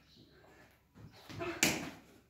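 A medicine ball caught in the hands with one sharp slap near the end, just after a short spoken count.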